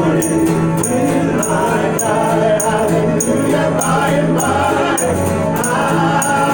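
Live acoustic bluegrass band playing: fiddle, mandolin, acoustic guitar, upright bass and banjo, with held bass notes under an even strummed beat of about two strokes a second.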